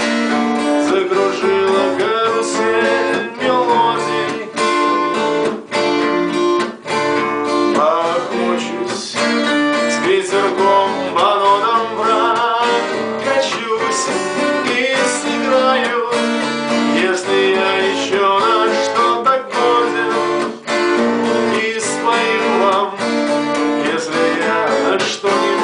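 Twelve-string acoustic guitar strummed steadily, with a man singing over it.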